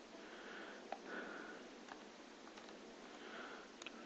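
Faint room tone with soft breathing through the nose and a few light clicks from laptop touchpads.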